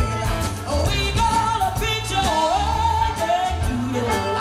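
Live band playing: drums, bass and electric guitars under a female lead vocal, with a long, bending melody line held through the middle.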